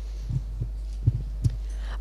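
Steady low electrical hum from the microphone and PA, with a few soft low thumps of the handheld microphone being handled as it changes hands.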